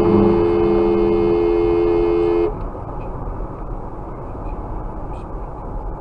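Two-tone car horn held in one long steady blast that cuts off about two and a half seconds in, followed by steady road noise heard inside the moving car.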